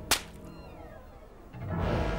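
Soundtrack sound effects: a sharp crack just after the start, a quiet stretch with a faint falling whistle, then a swelling rush of noise near the end.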